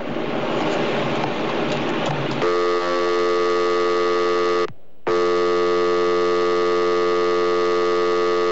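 Hiss of an open telephone line on air, then a steady telephone line tone that comes on about two and a half seconds in, stops for half a second, and resumes: the line left open after the caller has hung up.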